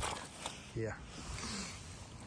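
Soft scuffing and rustling of loose soil and dry straw stubble as a boot and a bare hand move through it, with a brief scrape at the very start.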